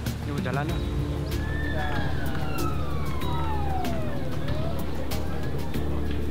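A siren wailing down in pitch over about three seconds, after a brief rapid warble, heard over background music.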